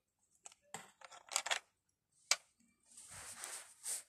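Light clicks and taps of small plastic toy figures being handled against a plastic dollhouse, with one sharper click a little past halfway, then a soft rustle near the end.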